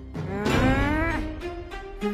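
A low, drawn-out animal-like call that rises in pitch for about a second and then falls away, startling the characters, over dramatic score music.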